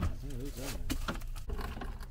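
A few sharp clicks and knocks from a garden hose fitting being worked onto a portable dehumidifier's drain, with a short muffled voice murmur under half a second in.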